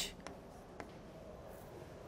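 Faint chalk writing on a chalkboard, with two light taps of the chalk against the board in the first second, the second one louder.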